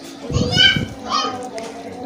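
A child's high-pitched voice calling out twice, the first call about half a second in and a shorter one just after a second.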